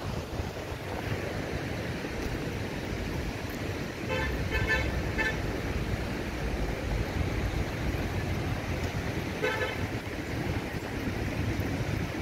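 Vehicle horn tooting in a quick series of short beeps about four seconds in, and once more a few seconds later, over a steady background of road traffic noise.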